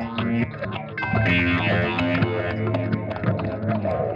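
Electric guitar played through a pedal chain of octave, fuzz, overdrive, phaser and delay effects. Picked notes are layered over a looped guitar part, with sustained low droning notes underneath.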